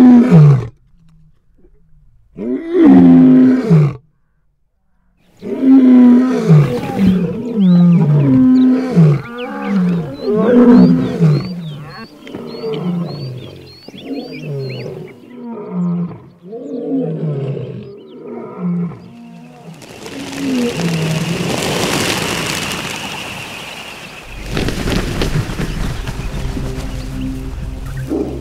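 Lion roaring in a full bout: two long roars, then a run of shorter grunting roars about a second apart that slowly weaken and space out. Faint high chirps sound during the grunts; a steady hiss follows, then a low rumble near the end.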